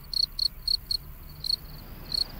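Cricket chirping: short, high-pitched chirps repeated about three to four times a second, with a brief pause about a second in.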